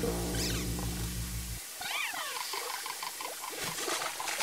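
Cartoon soundtrack: a low held music chord stops suddenly about one and a half seconds in. Then comes a run of squeaky, gliding cartoon sounds: a falling squeak followed by short repeated high notes.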